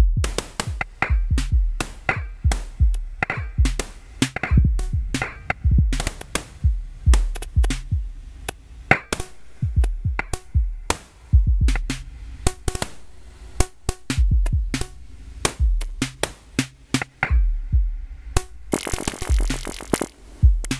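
Synthesized drum-machine pattern from a patch running on an Axoloti Core DSP board: deep kick drums that drop in pitch, sharp clicky percussion hits between them, and a burst of hiss near the end.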